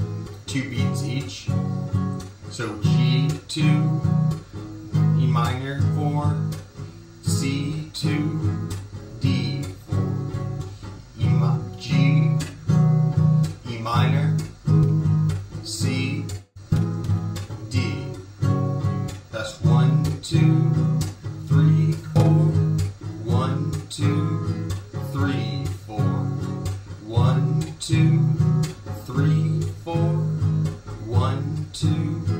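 Acoustic guitar, capoed high on the fifth fret, strummed in a steady rhythm through the song's verse chord progression of G, E minor, C and D.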